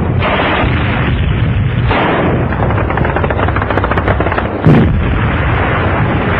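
Battle sounds of gunfire and explosions over a continuous rumble, with rapid rattling shots in the middle and one sharp, loud blast near the end.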